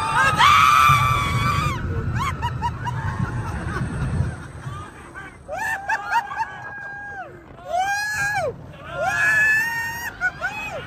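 Several roller coaster riders screaming together in long, held, overlapping screams: loudest in the first two seconds, then fresh waves from about halfway to the end. A low rumble runs under the first four seconds.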